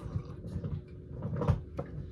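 Quiet handling sounds from a glass tea mug being sipped from and lowered, with a single sharp knock about one and a half seconds in and a small click just after.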